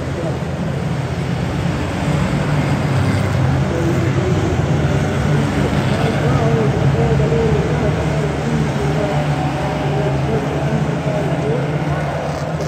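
A pack of Ministox stock cars racing on a wet oval track, their small engines revving in a continuous loud drone whose pitch wavers up and down as they go through the bend and down the straight.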